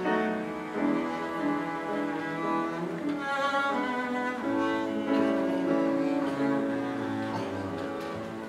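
Double bass played with the bow, a slow melody of long held notes, accompanied by piano.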